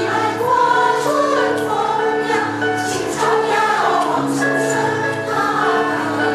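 Women's choir singing in parts, accompanied by a digital piano holding sustained low notes.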